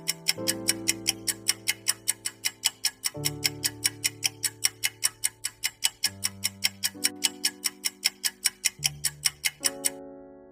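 Clock-tick sound effect of a quiz countdown timer, about four even ticks a second, over sustained background music chords that change every few seconds.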